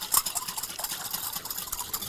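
Salt and sugar poured from a small glass bowl into a glass bowl of water, then stirred with a wire whisk against the glass to dissolve them for a brine: a light knock of glass on glass at the start, then a steady fine ticking and swishing.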